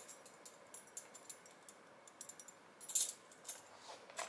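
A bunch of keys jingling faintly as it is slipped into a small pouch, with light metallic clicks throughout and a louder cluster of clinks about three seconds in.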